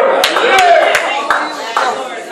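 Steady rhythmic hand clapping, about three claps a second, with a raised voice over it.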